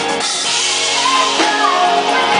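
Live rock band playing: a woman singing over electric guitar, bass and drums, with a bright cymbal wash ringing just after the start.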